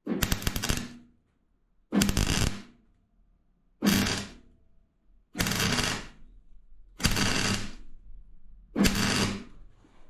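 MIG welder's arc crackling in six short bursts of about a second each, with brief pauses between, as steel plates are stitch-welded onto a car bulkhead. The welder is on a lowered setting for the thin bulkhead steel, after earlier burning holes through it.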